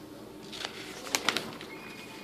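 Glossy paper pages of a coupon booklet being handled and turned: a few crisp snaps and rustles about a second in, over a faint low background hum.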